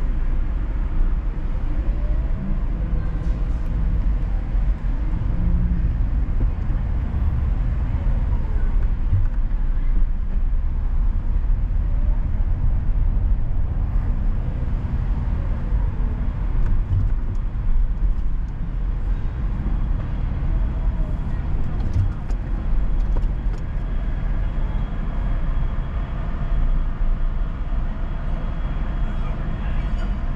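A car driving on city streets: a steady low rumble of engine and road noise, with the engine's pitch rising and falling faintly a few times.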